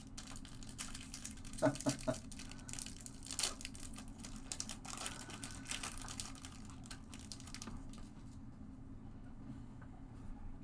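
A Topps Finest baseball card pack wrapper crinkling and tearing as it is opened by hand, in quick irregular rustles that thin out near the end.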